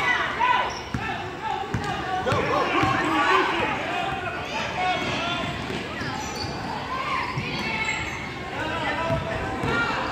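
Basketball dribbled on a gym floor in a string of bounces, under overlapping shouts and chatter from players and spectators, echoing in the large hall.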